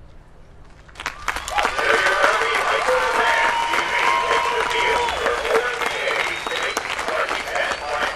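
Stadium crowd applauding and cheering, starting suddenly about a second in, with many voices yelling over the clapping.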